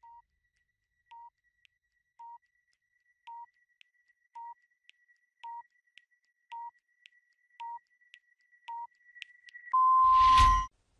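Quiz countdown timer: nine short electronic beeps about one a second, with faint ticks between them. Just before the count reaches zero comes a longer, louder tone to signal that time is up.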